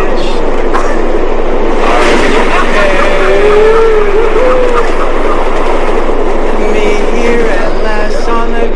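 Subway train running, a loud, steady rumble and clatter that swells for a few seconds in the middle, with a man's voice wavering over it.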